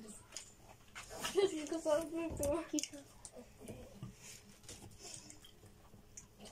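A person's wordless voice, moaning up and down in pitch for about two seconds, as a reaction to the sourness of a sour-coated candy. Small clicks and rustles of sweets and wrappers are heard around it.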